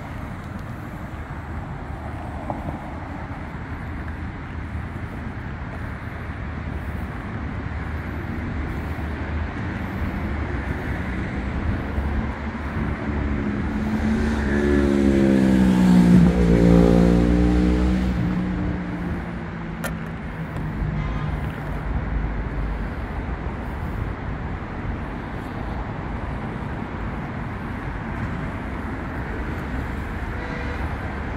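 Road traffic with a steady low rumble; about halfway through a vehicle passes close by, its engine getting louder and then falling in pitch as it goes past.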